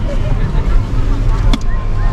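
Steady low engine and road rumble inside a Ram truck's cab as it creeps through slow traffic, with faint voices alongside and a single sharp click about one and a half seconds in.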